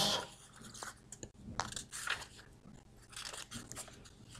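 Faint, scattered small clicks and rustles close to a lapel microphone.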